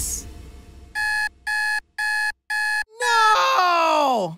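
Electronic alarm clock beeping four times in quick, even succession. Right after, a man yells, his voice sliding down in pitch.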